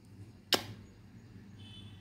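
A single sharp click about half a second in, over faint low background noise.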